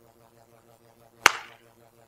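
A single sharp hand slap about a second in, one palm smacking down onto the back of the other hand as in catching a flipped coin. A faint steady hum runs underneath.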